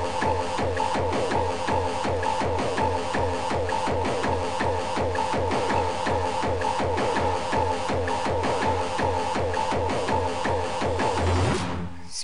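Fast, driving free-party tekno: a pounding kick drum with a pulsing bass under a held high synth tone and quick, repeating falling synth figures. Right at the end the beat drops out.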